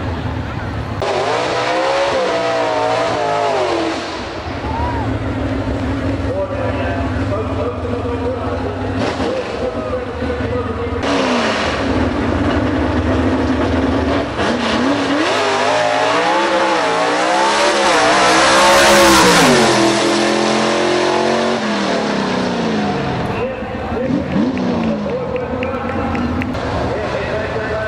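Gasser drag-race cars' engines revving hard, the pitch climbing and dropping again and again, with the loudest full-throttle stretch about three-quarters of the way through as a car launches and runs down the strip.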